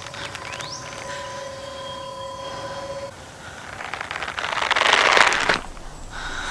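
Horror film soundtrack: a steady held tone with a few short chirps, then a rushing swell that builds over about two seconds to a loud peak and cuts off suddenly, a scare sting as the hanging woman's feet appear.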